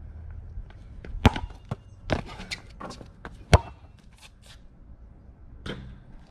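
A basketball thudding as it is bounced and struck, with sharp hits about a second in and three and a half seconds in and lighter knocks between.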